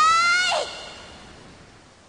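A young woman's drawn-out, high-pitched vocal sound in an anime voice track: the pitch rises and then holds, ending about half a second in. After it comes a soft hiss that fades away.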